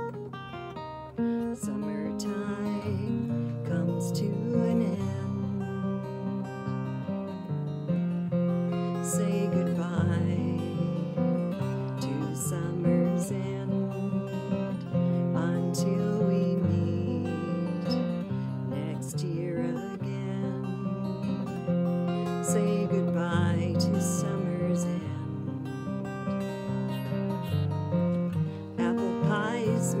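Steel-string acoustic guitar, capoed, played in an instrumental passage of a slow folk song; the singing voice comes back in near the end.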